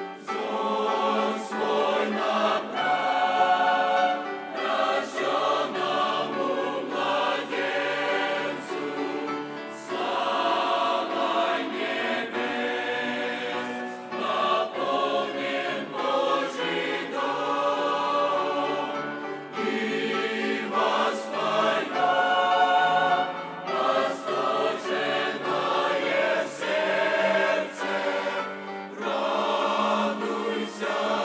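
Mixed choir of young men and women singing a hymn in phrases, with brief breaks between them.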